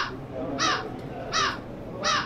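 A bird calling over and over in short, harsh calls, each falling slightly in pitch, about three-quarters of a second apart.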